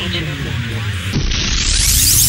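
Electronic intro sound effect: a low buzzing hum with static, then from about a second in a rising noise sweep that builds toward the end.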